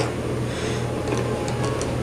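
A steady low hum of background room noise, with a few faint light ticks in the second half.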